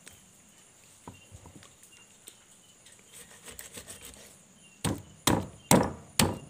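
Heavy knife chopping into a large fish on a wooden chopping board: three loud, sharp strokes about half a second apart near the end, after a few seconds of quieter taps as the fish is handled on the board.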